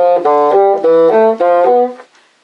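Bassoon playing a warm-up scale exercise in broken intervals: a quick run of short notes alternating up and down, some slurred together and some tongued separately, stopping just before the end.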